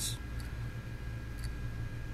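An opened hard drive running with its platter spinning: a steady low hum with a few faint ticks as the read/write head seeks over and over. It is failing to read because fingerprint residue and scratches on the platter are in the way.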